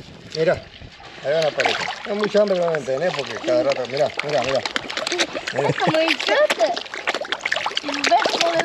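Many carp splashing and churning at the water surface of a concrete tank as they snatch bread thrown onto the water, with voices talking over it.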